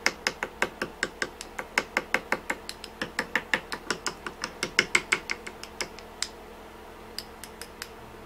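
Paintbrush being tapped to spatter thinned paint from a rake brush: a quick run of sharp taps, about five a second, that stops after about six seconds, with three more scattered taps near the end.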